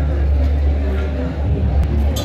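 People talking in a crowded market stall over a loud, steady low hum.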